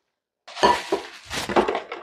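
Stainless steel drinking tumbler set down on a stone countertop with a clink about half a second in, followed by a second or so of knocking and handling noise.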